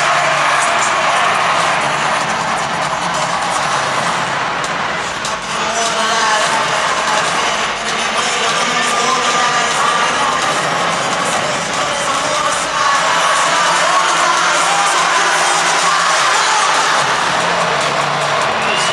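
Music blasting over a stadium's public-address system during the home team's pregame introduction, with the crowd cheering underneath, heard from the stands of a domed stadium.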